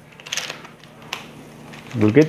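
Plastic strapping tape crinkling and rustling as hands pull it through the woven basket, with a short burst of crackles about half a second in and one sharp click a little after a second.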